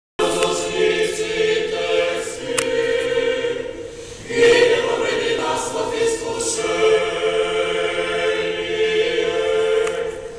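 A choir singing long held notes in two phrases, with a brief dip in loudness about four seconds in.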